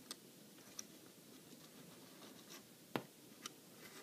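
Faint clicks and light taps of a plastic action figure being turned by hand on a wooden tabletop, with one sharper click about three seconds in.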